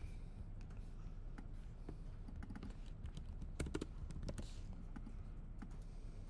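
Faint typing and clicking on a laptop keyboard: scattered single keystrokes, with a quick run of them a little past the middle.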